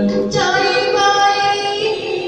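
A singer performing a slow Vietnamese song about a mother's lullaby, with musical accompaniment. A long note is held, and a new sung phrase begins about a third of a second in.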